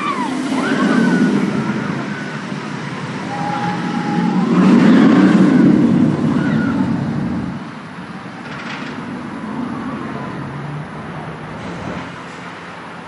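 B&M hyper coaster train running along its steel track past the listener. The rush builds to its loudest about five seconds in and fades after about seven and a half seconds. Riders scream over it.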